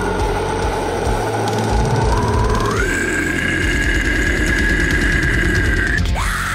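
Metal track playing, with drums and distorted guitars underneath a long held high note that steps up in pitch about halfway through and holds.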